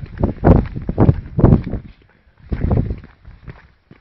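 Close, heavy footsteps at walking pace, about two a second, with a short pause midway.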